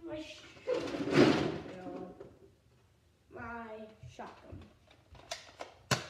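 Brief wordless bits of a boy's voice with clattering handling noises while a toy blaster is fetched, ending in a sharp click near the end.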